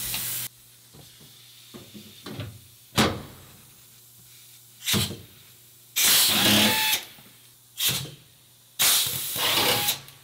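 Cordless rivet nut setter running in several short powered runs as it sets rivet nuts into the van's sheet-metal wall. Two of the runs last about a second.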